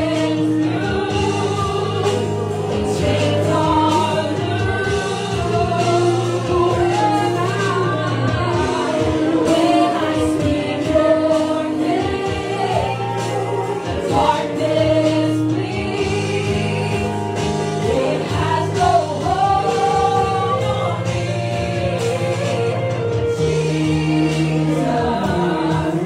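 Worship team and congregation singing a gospel worship song with instrumental accompaniment, over sustained bass notes.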